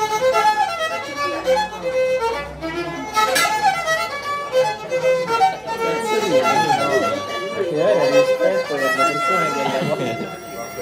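Solo violin played live, a melody of quick, stepping notes with some sliding, bent notes in the second half, over diners' voices.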